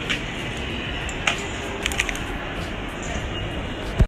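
Steady hiss and rumble of an airport terminal hall, with a few light clicks: one right at the start, one just over a second in and a pair about two seconds in.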